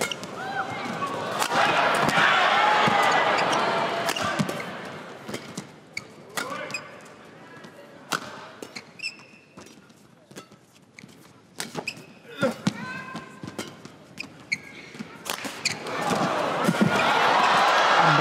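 Badminton rally in an arena: sharp racket strikes on the shuttlecock and shoes squeaking on the court. The crowd noise at the start dies away for the middle of the rally, then swells again near the end as the exchange builds.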